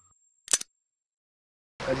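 A single short, sharp shutter-like click from a logo-intro sound effect about half a second in, after the fading tail of an earlier sting; then silence until speech over background music starts near the end.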